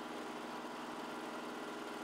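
An engine running steadily at idle, heard faintly as an even hum with a few steady tones.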